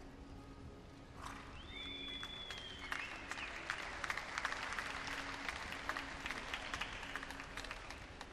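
A spectator's high whoop about a second in, then scattered applause from a small crowd that builds and fades away near the end, greeting a horse and rider as they finish a hunter round.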